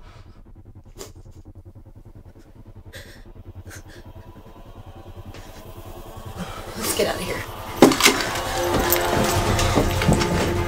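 Horror film score: a low pulsing drone with a few faint clicks, swelling from about six seconds in to a sharp stinger hit near the eight-second mark, then loud sustained tones.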